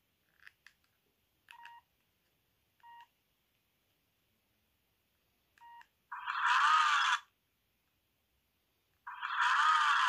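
Keypad tones of a Range Rover mini Chinese mobile phone (model 88888): short beeps from its small speaker as keys are pressed, three of them spaced a second or two apart. Near the end come two much louder, rougher menu sounds about a second long each, about three seconds apart.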